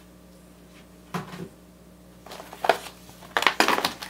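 Hands handling a sheet of gridded transfer tape and its paper backing on a desk: a soft knock about a second in, then crinkling and crackling of the sheet, loudest near the end.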